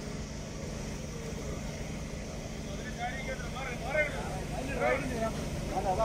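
L&T-Komatsu hydraulic excavator's diesel engine running steadily at idle, a low, even hum. From about halfway, a crowd's voices are heard faintly over it.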